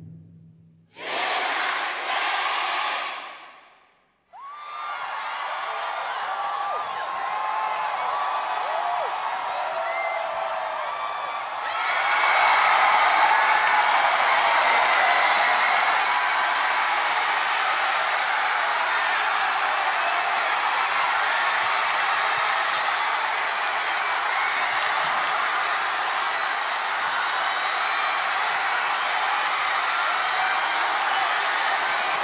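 A large concert crowd of young people cheering, screaming and clapping. After a short burst of noise and a brief hush at the start, the cheering builds and swells about twelve seconds in, staying loud and steady.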